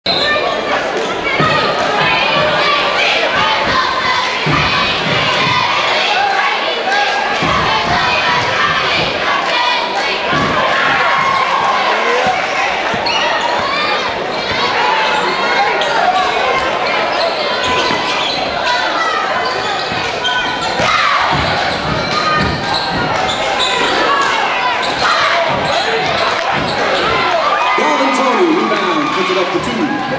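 A basketball being dribbled and bounced on a hardwood gym floor during game play, with a steady background of crowd voices in the gymnasium.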